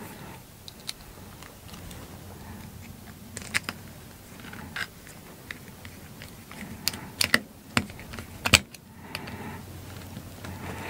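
Light clicks and taps of small metal parts being handled on the aluminum frame plate of a Prusa i3 3D printer kit, scattered through, with a quick run of sharper clicks between about seven and eight and a half seconds in.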